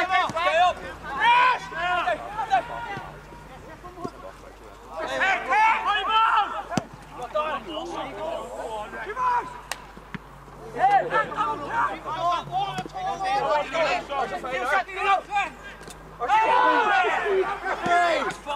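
Men's voices shouting on a football pitch in several bursts a few seconds apart, with a couple of sharp single knocks between them.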